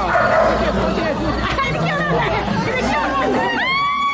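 Several people talking over one another, with a dog barking. A long held note begins near the end.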